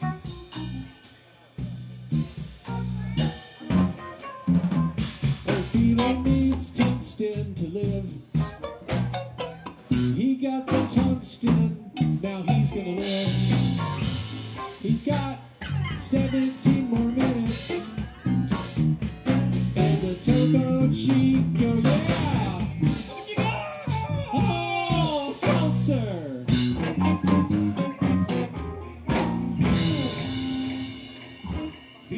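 A live band playing an instrumental passage: drum kit with snare and rimshot hits over bass and electric guitars, with bending guitar notes about two thirds of the way in.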